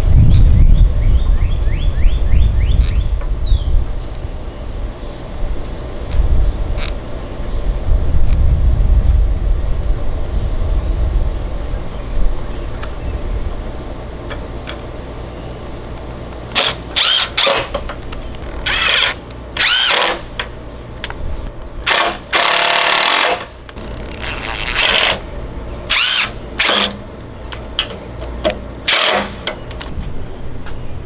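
Cordless drill driving screws into wood in short runs: about ten separate bursts in the second half, one of them longer, lasting over a second. A loud low rumble fills the first part.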